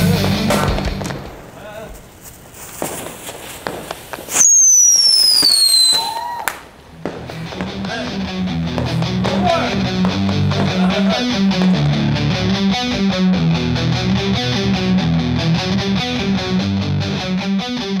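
Chicken-shaped novelty firework burning, spraying sparks with scattered crackles, then a loud whistle about four seconds in that falls steadily in pitch for about a second and a half before cutting off. From about seven seconds on, rock music with guitar takes over.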